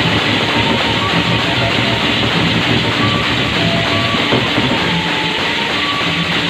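Sasak gendang beleq ensemble playing a tabuh: many pairs of hand cymbals clashing continuously over drums, with a few short melodic notes on top.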